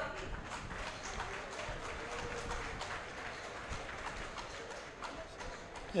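Applause from a small crowd: many hands clapping in a steady patter of irregular claps.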